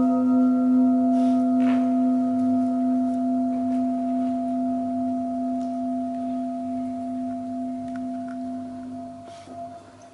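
Handheld metal singing bowl ringing out after a single mallet strike. It holds a low fundamental with several higher overtones, wavers gently, and slowly fades away by the end.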